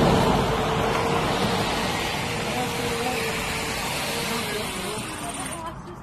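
Steady engine noise with a running hum, slowly fading away; the hum drops in pitch about five seconds in before the sound cuts off.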